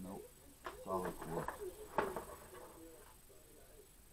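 A man's low, indistinct muttering, with one sharp click about two seconds in; it goes quieter after about three seconds.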